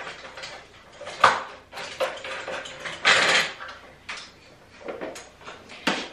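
Ring light being unmounted from its stand: a sharp knock about a second in, a brief rustle around three seconds in, and a few small clicks near the end.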